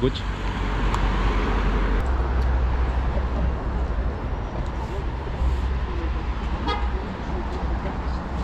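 Street traffic: a car driving past, with steady road noise and low rumble, and a short horn toot near the end.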